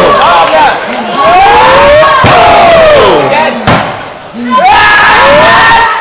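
Wrestling crowd shouting loudly, with long drawn-out yells near the microphone that rise and fall in pitch over the general crowd noise. The noise dips briefly about a second in and again around four seconds in.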